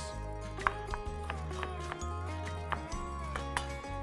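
Background music with a steady bass line, with a few sharp taps of a kitchen knife on a chopping board.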